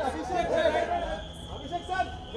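Chatter of photographers, several voices talking and calling out over one another.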